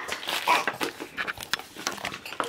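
Brief soft vocal sounds from young children, with light scratching and tapping of markers on paper.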